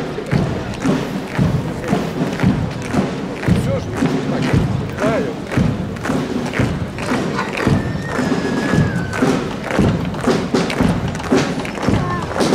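A column of soldiers marching in step on wet asphalt, their boots striking together in a steady beat of about two thuds a second, over a murmur of crowd voices.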